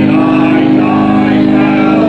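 Church congregation singing a hymn together, with instrumental accompaniment holding steady chords underneath.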